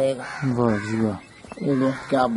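A man speaking in Punjabi, in short phrases with a brief pause in the middle.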